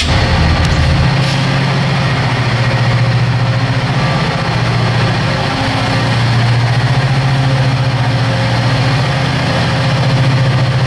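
EMD SD40-2 switcher locomotive's 16-cylinder two-stroke 645 diesel running with a steady, deep drone as the locomotive moves slowly.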